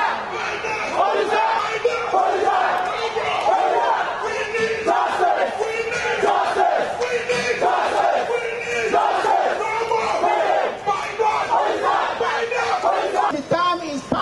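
A crowd of protesters marching and shouting together, many voices overlapping continuously.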